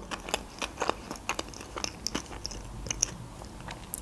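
A mouthful of sushi roll being chewed close to the microphone: a run of small, irregular wet clicks and crackles from the mouth.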